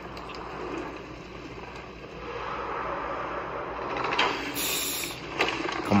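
Teaser sound design of carved stone grinding and rumbling, growing louder from about two seconds in. A brief hiss and a couple of sharp knocks come near the end.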